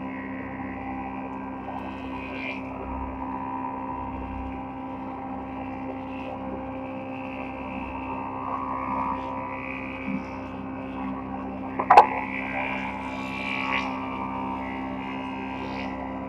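Multi-head wood planing machine running with a steady drone as a board feeds through it. There is one sharp knock about twelve seconds in.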